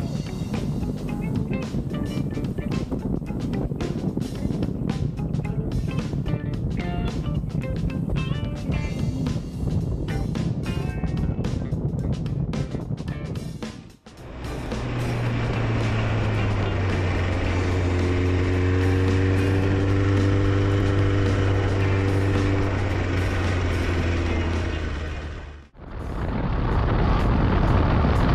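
Motorcycle riding sound, engine and road noise, under background music. The sound cuts off sharply about halfway and again near the end, and the part in between carries a steadier sustained note that rises and falls slightly.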